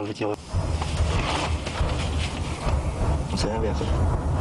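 Rocket artillery firing: a continuous low rumble that sets in about half a second in and holds steady. Brief voices are heard under it.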